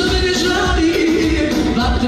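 Live band music at a party: a woman singing into a microphone over a steady bass beat of about two beats a second, played through PA speakers.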